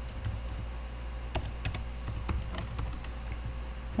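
Typing on a computer keyboard: irregular keystrokes, most of them after about the first second.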